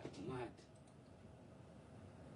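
A brief vocal sound from a man's voice in the first half second, then quiet room tone with a few faint clicks.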